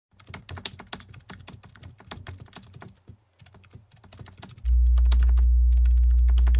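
Rapid, irregular computer-keyboard typing clicks, then about three-quarters of the way in a loud, steady low hum starts and runs on.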